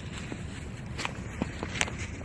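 Footsteps in dry fallen leaves: a few sharp leaf crackles in the second half over a low steady rumble.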